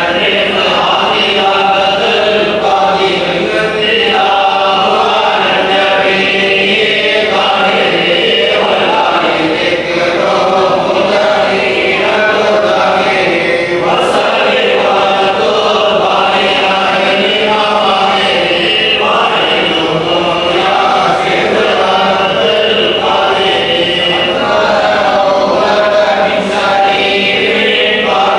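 A group of men chanting an Arabic devotional bait, a Sufi praise poem, together in unison. The chant runs on steadily at an even loudness without pause.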